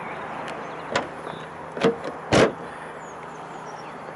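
A few light clicks, then one solid thud of a Toyota RAV4 door being shut about two and a half seconds in.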